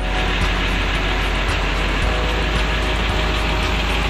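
Parked coach bus's engine idling close by: a steady, even rumble.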